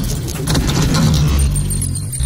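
Intro sound effects of metal pieces clinking and clattering together over a deep, steady rumble.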